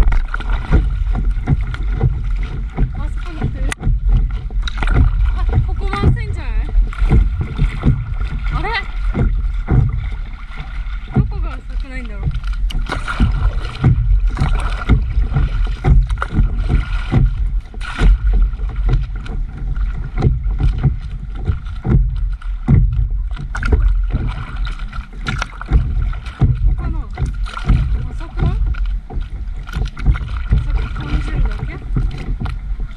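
Water splashing and lapping against the nose of a stand-up paddleboard as it moves through choppy lake water, with many small splashes over a heavy low rumble.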